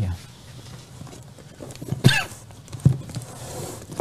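Books being handled and pulled from a shelf: a few soft knocks and rustles about two and three seconds in, and a light rustle near the end.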